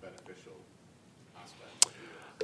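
Faint speech at the start, then quiet room tone broken by a single sharp click near the end.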